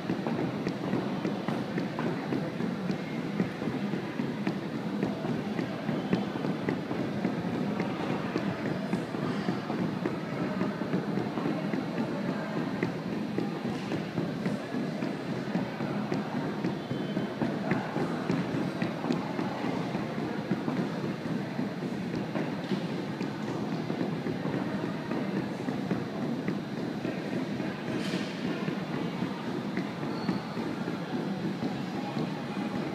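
Heavy 2-inch battle ropes slapping a hardwood gym floor in a fast, steady, unbroken rhythm as they are whipped into waves.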